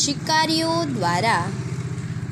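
A person's voice speaking in dictation style, over a steady low mechanical hum like an idling engine.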